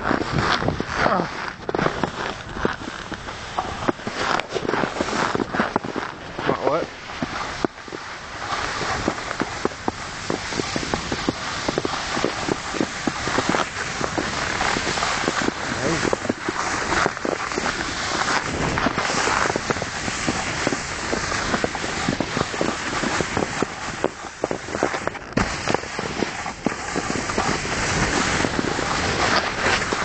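Footsteps crunching through a thin layer of snow on rough grass while walking with the camera, with a constant rushing noise underneath.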